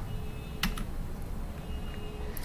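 A single computer key click about two-thirds of a second in, typical of advancing a presentation slide, over low room noise with a faint steady hum.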